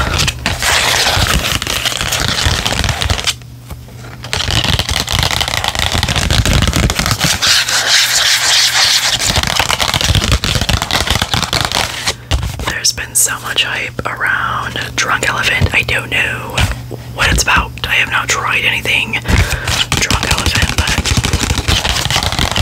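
Long press-on fingernails scratching and tapping on a cardboard skincare sample card held close to a microphone, with soft whispering over it. The scratching breaks off briefly about three and a half seconds in.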